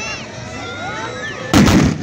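A troupe of tbourida horsemen firing their black-powder muskets together in one volley near the end, a single dense blast lasting under half a second. It is heard over crowd voices.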